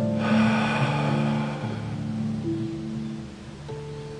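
Slow harp music of long, overlapping ringing notes that change pitch every second or so. A soft rush of noise lies under it for the first second and a half, and the music grows quieter toward the end.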